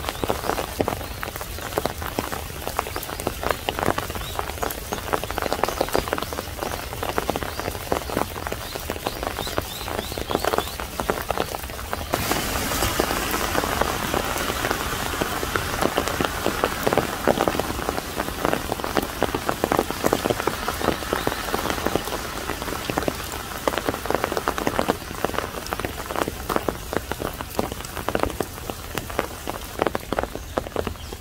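Spring rain falling, with many close drops tapping irregularly on surfaces. About twelve seconds in the sound changes suddenly and grows denser and hissier.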